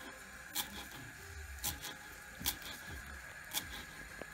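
Kitchen knife chopping fresh herbs on a wooden cutting board: four faint knocks of the blade on the wood, about one a second.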